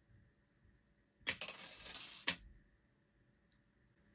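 A 3D-printed PLA pie slice released by a spring-loaded solenoid: a sharp click about a second in, then the plastic piece rattling down a plastic chute for about a second, and a clack as it lands in the plastic tray.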